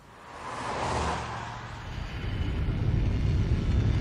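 A whoosh that swells and fades over the first second or so, then a deep rumble that grows steadily louder, building up to an explosion.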